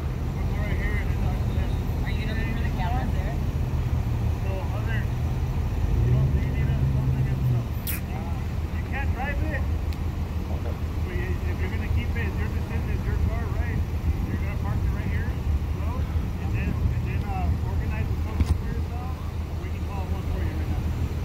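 Steady low hum of an idling emergency-vehicle engine, with people talking indistinctly over it and one sharp click about eight seconds in.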